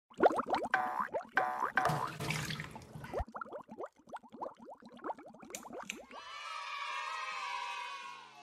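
Animated-intro sound effects: a quick string of bubbly, pitch-sliding bloops and pops with a few clicks. About six seconds in, a sustained bright synth chord swells in and fades near the end.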